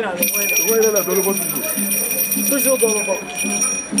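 A high, rapidly trilling ring, as of a bell or alarm, sounding steadily for about three and a half seconds and then stopping, with men's voices talking over it.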